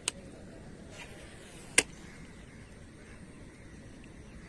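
Two sharp, short clicks, the second and louder about a second and a half after the first, over a faint steady outdoor background.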